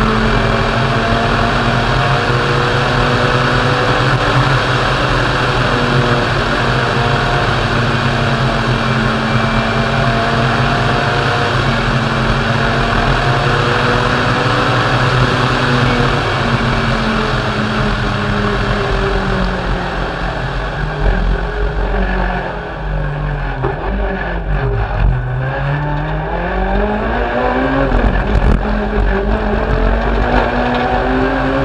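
Citroën C2 R2 Max rally car's 1.6-litre four-cylinder engine heard on board at speed, revs held high and fairly steady for most of the stretch. Later the revs fall in steps to a low point and climb back up, twice, with a few sharp knocks.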